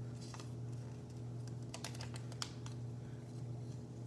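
Origami paper crinkling and clicking as it is folded and pivoted by hand: scattered light clicks, busiest about two seconds in. A steady low hum runs underneath.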